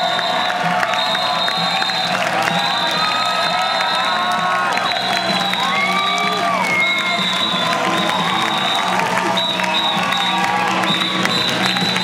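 A theatre audience cheering, shouting and whooping without a break, with music playing underneath.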